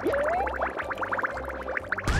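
Cartoon sound effects of a bubbling glass lab flask: a rising tone at the start, then a quick run of bubbly pops, over background music with a pulsing bass.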